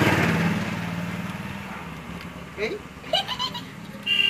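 A motor vehicle's engine, loudest at the start and fading away over about two seconds as it passes.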